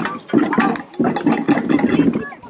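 Hubbub of a crowd of young children: many overlapping voices and shuffling footsteps blending into a loud, noisy wash, in two surges.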